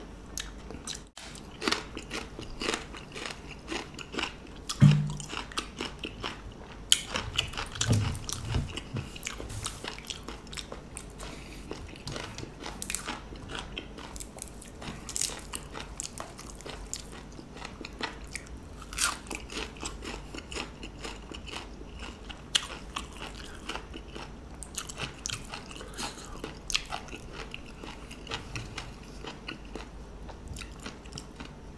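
A person chewing and crunching crisp raw vegetables close to the microphone, with irregular bites and wet chewing throughout.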